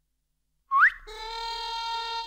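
Silence, then about three-quarters of a second in a short, quick rising whistle used as a comic sound effect, followed straight away by background music coming in on a held chord.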